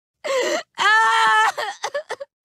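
A teenage girl's cartoon voice moaning in misery: a short groan, then a longer held wail about a second in, trailing off into a few short broken sounds.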